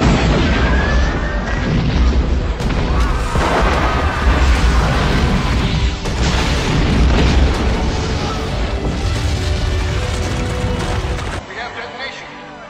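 A huge explosion with a long, deep rumble, laid over music, that cuts off abruptly near the end.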